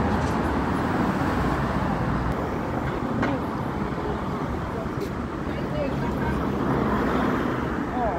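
Steady city traffic noise, the rumble of cars passing on the street, with faint, indistinct voices of passersby mixed in.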